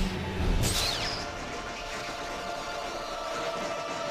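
Lightsaber duel soundtrack from an animated show: a low impact and a swooping lightsaber swing in the first second, then sustained music for the rest.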